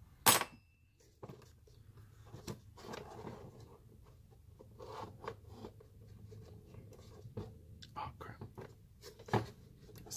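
A sharp metal clack about a third of a second in, with a brief ring, as a thin metal strip is set down on a wooden workbench. It is followed by small clicks, scrapes and rattles of hands prying a coffee maker's aluminium heating element and wiring out of its plastic base.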